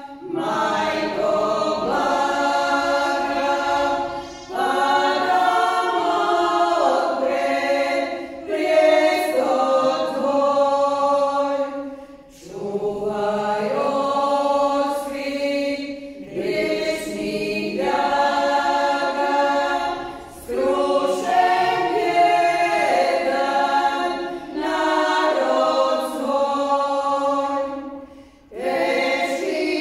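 Women's vocal group singing a church hymn unaccompanied, in several voices, in phrases of about four seconds with short breaks for breath between them.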